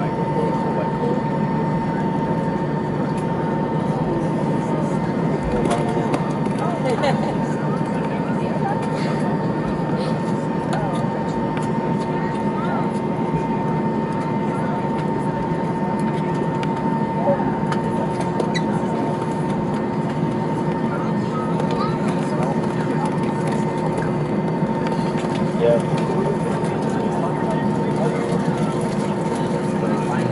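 Airliner cabin noise while taxiing: the jet engines at idle give a steady rumble with a constant high whine, under indistinct passenger chatter.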